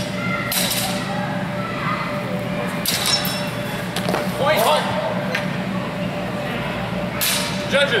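Longsword blades clashing in a fencing exchange: several sharp metallic clanks, some ringing briefly, with the loudest clashes about three seconds in and near the end. A steady hum of a large hall runs underneath.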